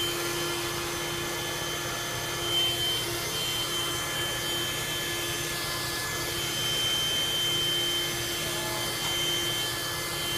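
Handheld 12-volt car vacuum, a combination vacuum and air pump that plugs into the cigarette lighter, running steadily as it sucks debris off the van's carpet: a constant motor hum with a thin high whine above it.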